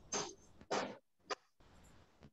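Three short bursts of noise, the last a sharp click, picked up on a video-call participant's open microphone.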